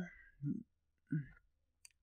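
A man's faint murmurs and mouth sounds in a pause while he thinks, twice, then a tiny high click near the end.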